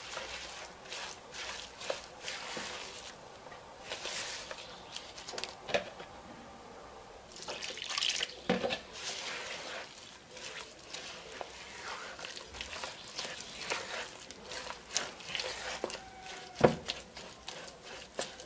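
A spatula stirring and squishing a wet corn-flour and semolina dough in a plastic bowl, with irregular wet squelches and scrapes, as warm water is worked in little by little to set the batter's consistency.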